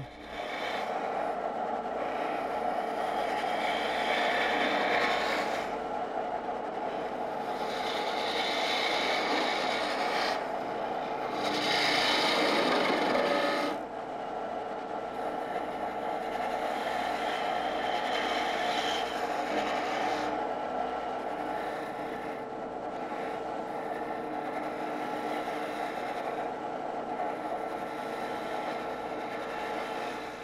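Spindle gouge cutting a spinning wooden blank on a lathe: a continuous hiss of shavings peeling off over the lathe's steady hum. It swells louder over several passes of the tool and is loudest about twelve to fourteen seconds in.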